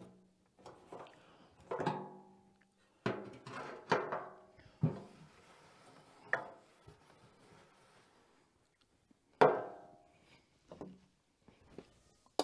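Half a dozen separate metallic clanks and knocks, each ringing briefly, as the steel frame and tank of a portable generator are handled. The loudest knock comes near the end.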